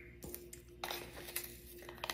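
Faint clicks and light scrapes of a spice bottle and a plastic measuring spoon being handled as onion powder is scooped out, over a faint steady hum.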